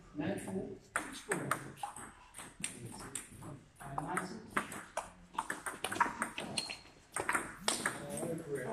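Table tennis rally: the ball clicking sharply off bats and table many times in quick succession.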